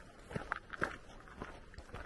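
Footsteps of a person walking on a dirt and gravel trail, about five steps in two seconds.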